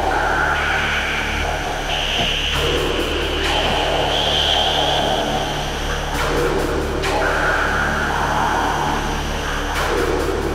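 Live symphonic black metal band playing a slower, sustained passage: held chords that change every second or two over a steady low bass drone, with little drumming.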